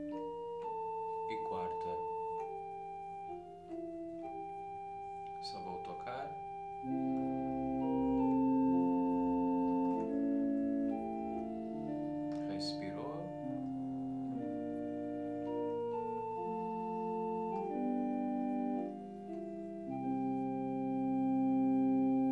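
Keyboard with an organ voice playing the melody lines of a psalm tone in held chords, each chord sustained at an even level and then moving on to the next.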